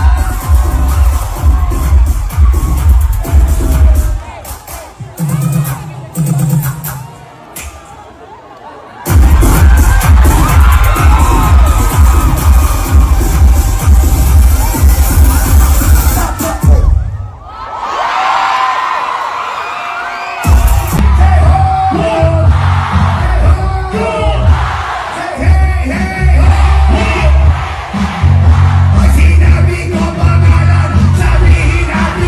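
Loud live concert music with a heavy bass beat, a performer's voice over it, and a crowd cheering. The beat thins out about four seconds in and drops out again around seventeen seconds, coming back a few seconds later each time.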